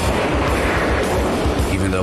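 Rocket motor of an air-to-air missile firing off a fighter jet's wing pylon, a loud rushing roar with a pulsing low rumble, over dramatic background music.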